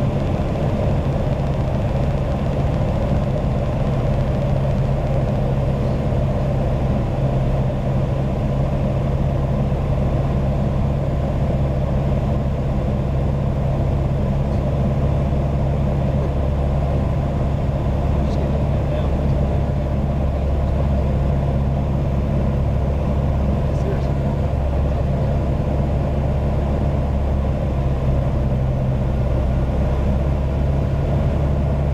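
Steady cabin drone of a Socata TB10 Tobago's four-cylinder Lycoming engine and propeller on final approach, even in pitch and level throughout.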